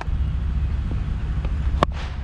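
Wind rumbling steadily on a helmet-camera microphone, then near the end a single sharp crack of a cricket bat striking the ball.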